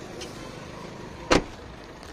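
A car's rear door shut once, a single sharp slam a little past halfway through, over faint steady background noise.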